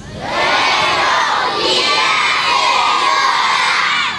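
A crowd of schoolchildren shouting a greeting back in unison, their many voices drawn out together for about three and a half seconds before fading.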